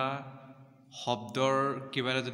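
A man's voice speaking slowly in long, drawn-out syllables, with a short pause about half a second in, then one long held syllable.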